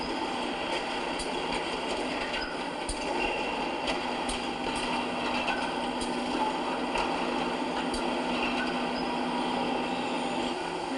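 Brick factory machinery running: steady mechanical noise with a low hum held throughout and scattered clicks and knocks, heard from a film soundtrack played back in a room.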